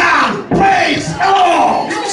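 A man shouting his preaching through a microphone and PA in a loud, excited voice, with a congregation's voices behind him. The shouting breaks off briefly about half a second in, then goes on.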